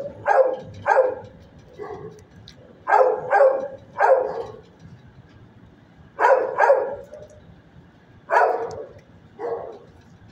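A dog barking in short runs of two or three barks, with pauses of a second or two between the runs.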